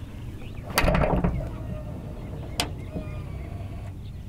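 Chevrolet Silverado EV power front-trunk lid being pulled down with a thump about a second in. Its automatic closing mechanism then takes over, with a sharp latch click about two and a half seconds in and a faint motor whine after it.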